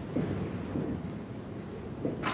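Dry-erase marker writing on a whiteboard over a low, steady room rumble.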